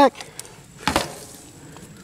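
A single short knock about a second in, from a block of ballistics gel being handled and turned around on its towel-covered board; otherwise only low background.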